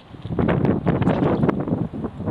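Wind buffeting the microphone: a loud, rough rumbling noise that starts about a third of a second in and eases off near the end, with crackles in it.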